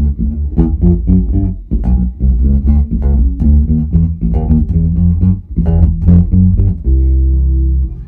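Four-string electric bass played through a vertical 4x10 bass cabinet, the Revsound RS410VT: a busy line of plucked notes, ending on one long held note in the last second that cuts off.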